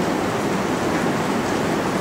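Steady rushing noise, even and unbroken, with no speech.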